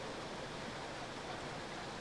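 Steady, low rush of water flowing in a flooded canal, with no distinct events.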